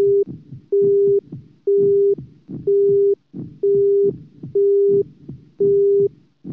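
Electronic heart-monitor beep: a steady mid-pitched tone about half a second long, repeating about once a second, with fainter low thumps between the beeps.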